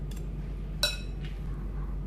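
A metal spoon clinks against a bowl while salt is scraped out of a small bowl into a mixing bowl: a few faint ticks, then one sharp ringing clink just under a second in, over a steady low hum.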